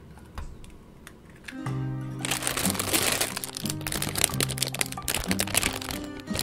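A faint crack of an egg against a steel bowl near the start, then background music begins about one and a half seconds in. From about two seconds, a plastic bread bag crinkles loudly and continuously as it is handled.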